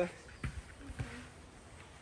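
Two soft knocks, about half a second and a second in, as a boy's hands and knees shift on a surfboard laid over cushions, against quiet background.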